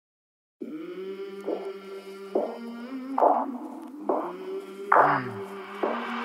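Background music: after a brief silence, a sustained chord with a stronger accented note about once a second, the instrumental start of a song.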